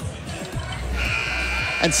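A gymnasium scoreboard buzzer sounds about a second in, a steady harsh buzz lasting about a second over the background noise of the gym, signalling the end of a timeout.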